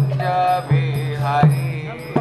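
Devotional mantra chanting sung over a steady low drone, with a percussion strike about every three-quarters of a second.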